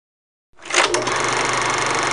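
A rapid, even mechanical clatter fades in about half a second in, with a sharp click just before the one-second mark, then runs on steadily. It is a sound effect laid under the animated logo.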